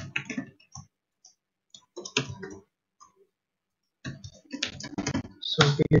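Typing on a computer keyboard: three short runs of keystrokes with brief pauses between them.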